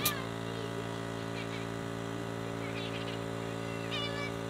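Portable electric air compressor running with a steady hum, supplying a pneumatic stapler. Birds chirp over it, and there is a sharp click at the very start.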